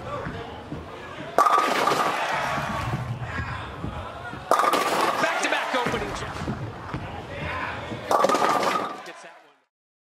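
Bowling ball rolling down the lane, then a sudden crash of pins, heard three times about 1.5, 4.5 and 8 seconds in, each followed by crowd voices and cheering; it all fades out near the end.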